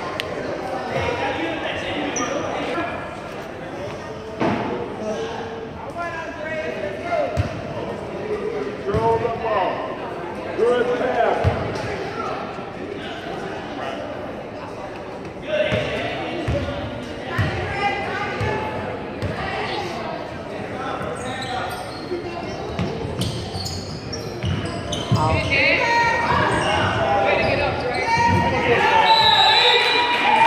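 Basketball bouncing on a hardwood gym floor, echoing in a large hall, over indistinct shouts and chatter from players and spectators. The voices get louder near the end.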